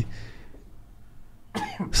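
A man sneezes once, a sudden short burst about one and a half seconds in.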